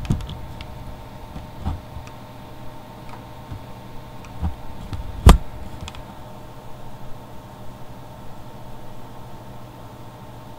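Scattered clicks and knocks from handling a Rayovac Sportsman LED flashlight in the hand, with one sharp, much louder click about five seconds in, over a steady background hum.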